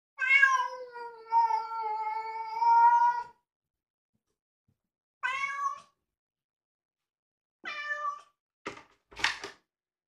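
A cat meowing: one long, drawn-out meow of about three seconds, then two short meows, followed by two brief sharp noises near the end.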